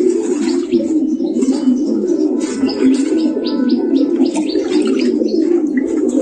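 Domestic pigeons in a loft cooing continuously, many birds overlapping in a steady low chorus.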